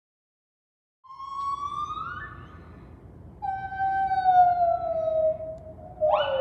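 White-handed gibbons singing: about a second in, a long call glides upward in pitch, then a second long call slides slowly down. Overlapping calls from more than one gibbon start right at the end.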